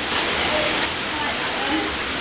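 Water of an underground cave stream running steadily, a continuous rushing noise.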